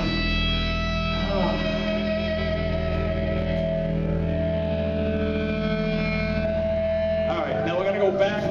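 A rock band's final chord ringing out at the end of a song: distorted electric guitar and bass hold steady sustained tones for about seven seconds after the last drum hits. Voices come in near the end.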